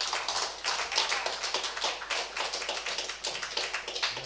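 A small audience applauding, many separate hand claps in an irregular patter.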